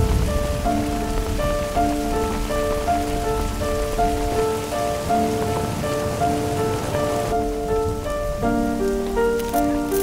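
Steady rain falling, with a soft melody of short, stepping notes playing over it. The rain's hiss thins about seven seconds in.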